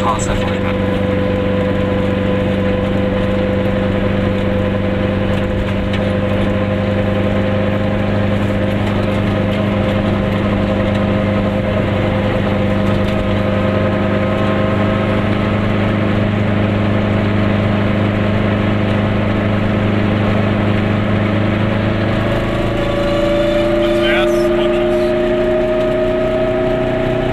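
Goggomobil microcar's two-stroke twin-cylinder engine running at a steady pace while driving, heard from inside the car. About four seconds before the end its note rises steadily as the car speeds up.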